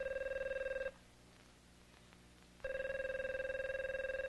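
Telephone ringing twice with a fluttering, trilling tone. The first ring stops just under a second in, and the next starts about two and a half seconds in.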